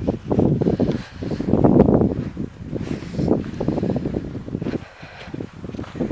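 Wind buffeting the microphone in uneven gusts, with a rustling, rumbling noise that swells and drops every second or so.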